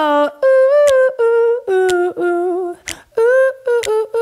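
A single voice humming a wordless melody without accompaniment, in a string of short held notes that step up and down in pitch.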